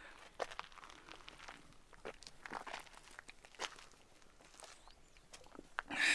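A man drinking from a plastic water bottle: faint, irregular small clicks and crackles from the bottle and his gulps.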